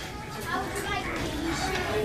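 Background chatter of shoppers, with children's voices among it: indistinct, overlapping talk in a busy shop.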